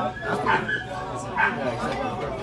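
A dog yipping twice in short, sharp calls over the chatter of people talking.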